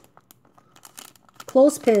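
Clear cellophane bag crinkling faintly as it is handled, a light scattered crackle, with a woman's voice starting near the end.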